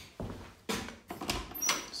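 Interior closet door being opened by its knob: a few short clicks and knocks of handling, with a brief high squeak near the end.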